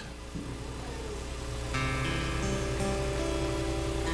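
Guitar playing soft, sustained background chords, with a new chord struck a little under two seconds in and left ringing; a steady low hum lies underneath.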